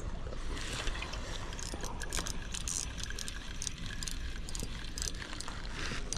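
Steady rush of dam tailwater with a low rumble, with scattered light clicks and ticks as a spinning reel and its line are handled.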